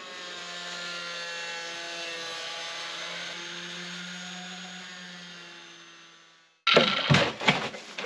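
Corded angle grinder running steadily with its cutting disc in the top of a plastic jerrycan, a steady motor whine that fades away about six and a half seconds in. After a sudden cut, louder, choppier sounds follow near the end.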